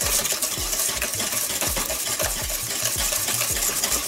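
Wire whisk beating a runny egg, butter and sugar batter in a stainless steel bowl, the wires scraping and clinking against the metal in quick, even strokes, about three a second.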